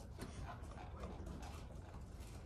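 Faint clicks of a computer keyboard being typed on, over the low steady hum of a quiet room.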